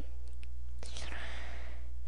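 Steady low electrical hum on the recording, with a faint breathy hiss about a second in.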